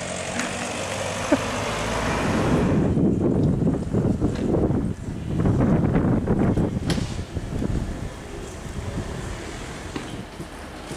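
A car pulling away and driving off: a low engine and tyre rumble that swells over the first few seconds and fades near the end.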